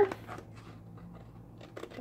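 Faint rustling and crinkling of a sheet of designer paper being handled, a few light crackles.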